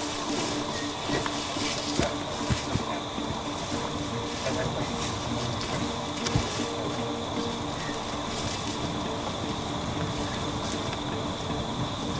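Outdoor field ambience on a hillside: a steady hiss with many scattered light crackles and clicks, like rustling in grass and brush, and a few faint steady tones underneath.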